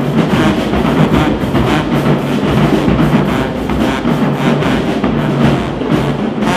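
Marching band playing in the stands: drums driving a steady beat with brass over them.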